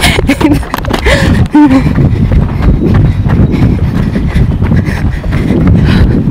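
Running footsteps and the jolting of a handheld camera as someone runs, a dense, loud, irregular thudding, with a few short voice sounds like laughs or gasps in the first two seconds.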